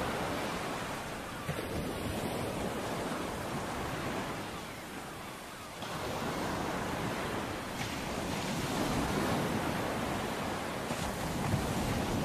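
Ocean waves washing in a steady rush that eases off about five seconds in and swells again.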